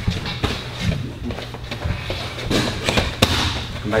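Boxing gloves striking focus mitts in quick combinations: an irregular series of sharp smacks, the loudest about three seconds in.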